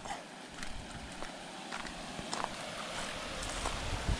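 Footsteps on the loose gravel and stones of a creek bank. The faint crunching steps come roughly every half second over a steady low hiss of outdoor background noise.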